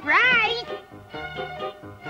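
A short, high cartoon voice exclamation that glides up and down in pitch in the first half second, then light background music.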